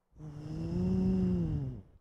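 A woman's voice making one long, drawn-out vocal sound effect, a hummed "zoom"-like noise that rises slightly in pitch and then falls away. It mimics a smooth, gradual take-off into motion.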